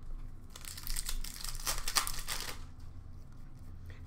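Trading-card pack wrapper crinkling and tearing as a pack is opened, a dense rustle from about half a second in to about two and a half seconds.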